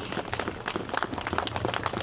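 Crowd applauding: many hands clapping at once in a dense, irregular run of claps that holds steady.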